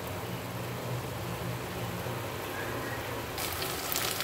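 Steady low hum and faint hiss of a gas burner heating a small pan of saffron milk. Near the end a louder sizzle of grated potato frying in ghee starts.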